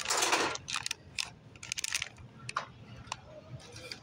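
Foil blind-bag toy package crinkling as it is picked up and handled: a loud rustle at the start, then several shorter crackles.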